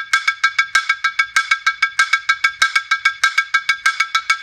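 A car brake drum used as a percussion instrument, struck rapidly with two mallets in a steady rhythm of about seven strokes a second, each stroke a bright metallic ring with several high pitches that carry over between strokes.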